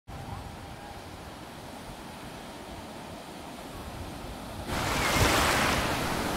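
Ocean surf breaking on a sandy beach, with some wind on the microphone. About three-quarters of the way through it jumps suddenly louder to the close wash of waves running up the shallows.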